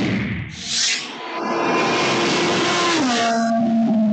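Race-car fly-by sound effect: a loud high engine note that holds steady, then drops in pitch about three seconds in as the car passes, over a rushing noise.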